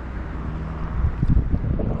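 Wind buffeting the microphone, a low rumble that gusts harder about a second in.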